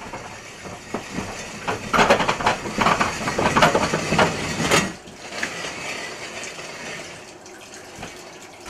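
Coal-loaded steel mine cart pushed by hand along narrow-gauge rails, its wheels rolling and clattering with irregular knocks, loudest from about two to five seconds in, then fading to a quieter rumble.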